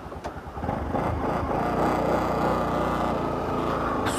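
Bajaj Pulsar NS200 motorcycle's single-cylinder engine running as the bike moves off, its sound building over about the first second and then holding steady.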